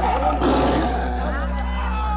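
A Bengal tiger roaring, loudest about half a second in, over a crowd of people shouting.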